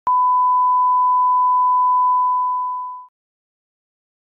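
Television colour-bar test tone: a single steady pure beep lasting about three seconds, fading out over its last second.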